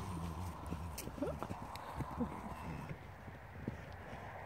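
Hooves of horses and Highland cattle thudding irregularly on grassy pasture turf, with a low hum under them for about the first second and a half.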